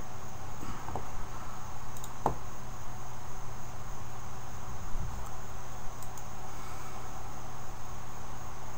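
Steady background hum and hiss of the recording room, with a faint high whine, and two faint clicks about one and two seconds in, mouse clicks as windows are closed and opened on screen.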